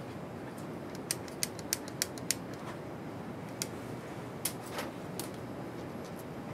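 Sharp plastic clicks of a micropipette and lab plasticware being handled: a quick run of five clicks about a third of a second apart, then a few scattered ones, over steady room noise.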